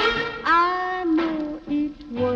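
A 1940s swing big band recording playing on, a melodic phrase of held and gliding notes over the band, briefly dipping in level near the end.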